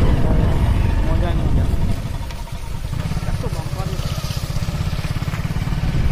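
Motorcycle on the move: a heavy low rumble of the engine and wind on the microphone, dipping briefly about two seconds in. Faint voices come through underneath.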